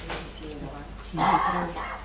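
Short bits of indistinct speech in a woman's voice, the louder stretch in the second half.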